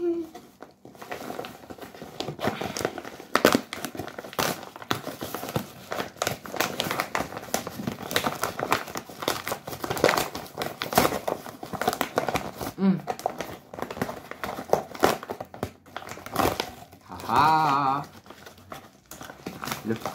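Paper padded mailer with a bubble-wrap lining being torn open and handled: dense, irregular crinkling and crackling of paper and plastic bubble wrap, with a few sharper tearing rips.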